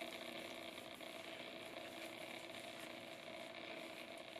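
Faint steady hum of room tone, even throughout with no strokes or clicks.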